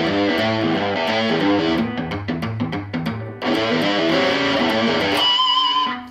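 Distorted electric guitar playing a hard-rock boogie riff, a shuffle of repeated low-string notes, with a short break about three seconds in. Near the end a single held note rings with wide vibrato and then stops.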